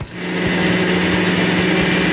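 Countertop blender running at speed, puréeing spinach soup: the motor starts about a moment in, builds up over half a second and then holds a steady, loud whirr with a low hum under it.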